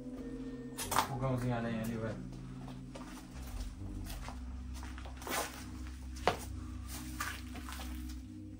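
A person's voice is heard briefly, about a second in, over a steady low hum. Two sharp knocks come later.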